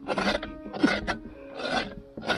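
Scraping strokes against the inside wall of a large pumpkin as its flesh is gouged out, repeated about two or three times a second.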